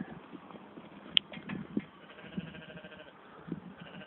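Merino sheep bleating faintly, with a single sharp click about a second in.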